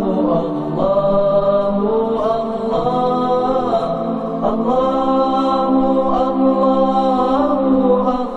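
Islamic vocal chant (nasheed) played as the programme's closing theme. Several layered voices hold long notes and glide from one pitch to the next every second or two, with no drums.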